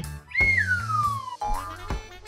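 Children's background music with a plodding bass line; a whistle-like note starts about a third of a second in and slides steadily downward for about a second, followed by a short rising note near the end.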